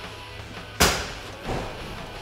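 A sharp clunk from the pickup's body a little under a second in, then a softer knock about half a second later, over background music, as the hidden storage is being opened.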